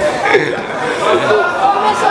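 Several people chattering and laughing over one another.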